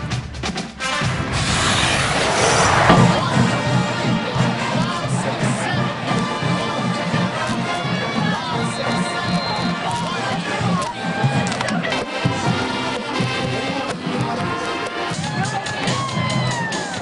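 Upbeat music with a pulsing beat, with a squad of high school cheerleaders cheering and shouting over it. A loud burst of cheering or noise comes about two seconds in.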